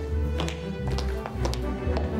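Footsteps, hard shoes clicking on a hard floor at about three steps a second, over background music with a low held tone.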